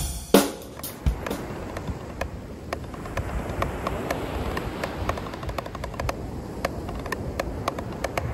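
A last loud drum-kit hit just at the start, then steady ocean surf and wind on the microphone, with drumsticks tapping a drum practice pad in light, scattered clicks.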